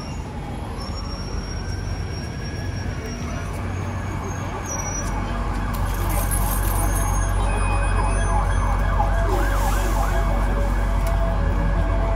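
An emergency vehicle's siren wailing, rising and falling in pitch over street traffic. A low traffic rumble grows louder about five seconds in.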